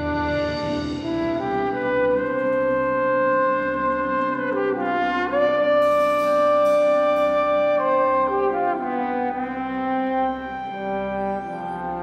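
Solo trombone playing long, held, legato notes. About five seconds in it glides up to a long high note, with the orchestra accompanying softly underneath.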